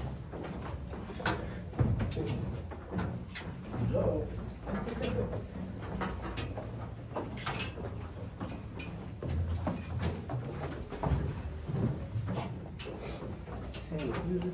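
Footsteps of several people going down a steep staircase: irregular knocks and scuffs, uneven in pace, with a faint low rumble underneath.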